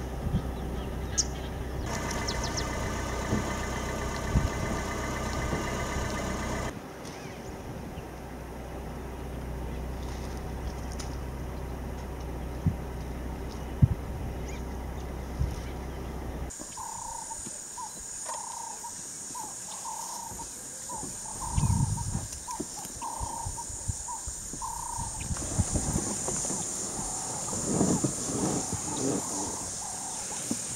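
Outdoor ambience in several cuts: first a low steady rumble with faint clicks, then a high steady insect drone with a bird calling over and over, about one and a half calls a second, and a couple of low thumps near the end.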